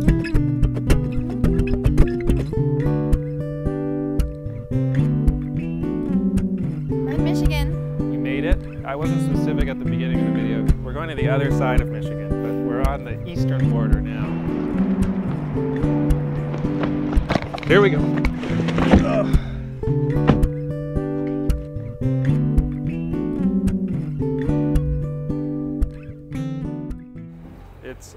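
Music: a looped guitar part, with the same notes repeating over a steady beat. Voices talk over it in the middle.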